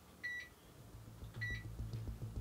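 Two short, high electronic beeps from bench equipment, about a second apart, then a low electrical hum from a transformer-fed high-voltage charging circuit that comes up and grows louder.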